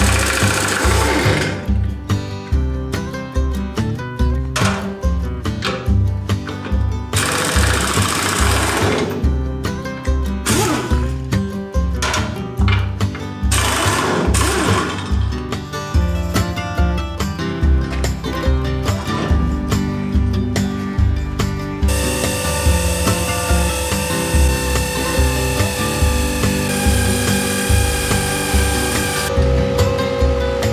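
Background music with a steady beat, over several loud bursts of a pneumatic impact wrench rattling off wheel lug nuts in the first half. Steady held tones of the music fill the later part.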